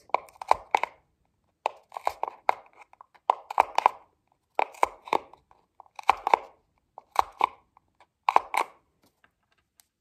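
A push pin punched through layers of paper stretched over the end of a cardboard toilet-paper tube, piercing the star dots of a constellation one by one. Each puncture is a short cluster of sharp, crackly clicks, about eight of them roughly a second apart.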